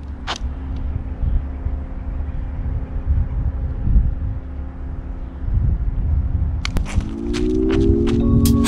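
Low rumble of wind on the microphone, broken by a few sharp clicks. About seven seconds in, music with a held chord swells in.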